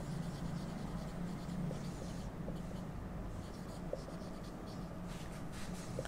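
Marker pen writing on a whiteboard: faint scratching strokes with small ticks as letters are formed, over a steady low room hum.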